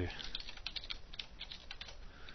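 Computer keyboard typing: about a dozen key presses in quick succession.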